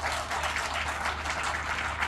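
Audience applauding: a steady round of clapping from many hands.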